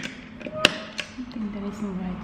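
A few sharp clicks from effects-pedal and mixer controls being worked by hand, the loudest about two-thirds of a second in and another at about one second, over faint wavering tones.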